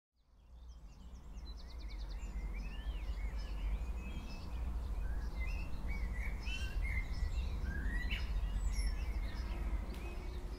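Several birds chirping and singing, with short rising and falling calls and a quick trill, over a steady low rumble; the sound fades in from silence over the first couple of seconds.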